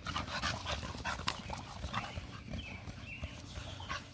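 Two American Bully dogs play-fighting on grass: low, rough dog vocalising and scuffling, with a few faint short high sounds around the middle.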